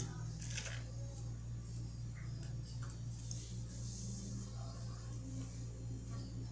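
A steady low hum, with a few faint, scattered soft scrapes and clicks from a metal spoon smoothing thick soap paste in a foil-lined tray.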